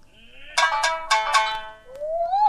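Shamisen accompaniment between sung phrases of rōkyoku: a run of four sharply plucked, ringing notes, then a note that slides upward near the end.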